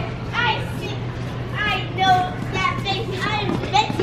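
Children's voices: short, high calls and chatter as they play, over a steady low hum.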